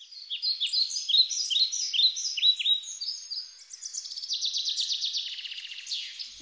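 Birdsong: quick, high chirps repeated over and over, several overlapping, giving way to a rapid trill in the second half.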